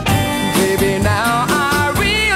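Early-1960s pop song: a young woman's lead vocal over a band backing, the voice coming in about half a second in with wavering held notes.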